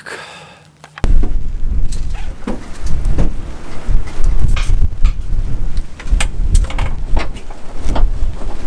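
Wind buffeting the microphone, starting suddenly about a second in, with scattered knocks and clanks throughout.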